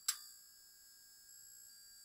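A chime sound effect, struck once just after the start, rings on as a faint, high, bell-like tone with several overtones that holds steady and slowly fades.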